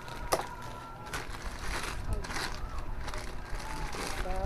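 Clear plastic wrapping crinkling and rustling in irregular bursts as a new motorcycle front fork tube is handled inside its bag, after a sharp click just after the start.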